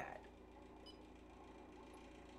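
Near silence: room tone with a low steady hum and one faint short click a little under a second in, the press of the Enter key on an Evenheat Set-Pro kiln controller.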